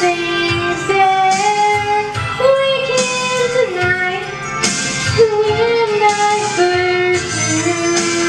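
A 16-year-old girl singing solo into a handheld microphone, holding long notes that step up and down in pitch, over amplified instrumental accompaniment with guitar.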